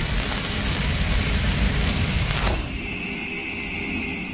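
Cinematic logo-sting sound effect: a loud rushing, crackling noise that dies away, with a falling sweep about two and a half seconds in, after which it thins to a steady high hiss.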